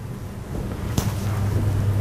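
Steady low hum with a rumbling noise on the microphone that grows louder, and one faint click about a second in.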